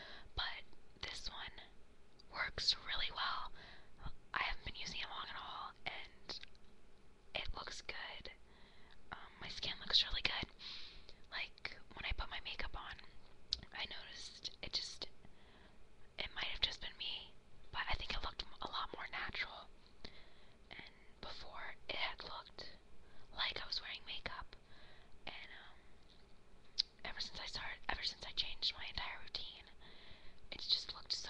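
A woman whispering close to the microphone, talking on and off throughout in short hissy phrases.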